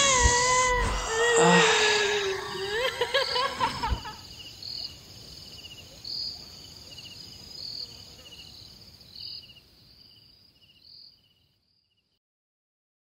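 A man's drawn-out, wavering cry of pain, falling in pitch over the first few seconds. Then crickets chirping in short, regular pulses, fading out shortly before the end.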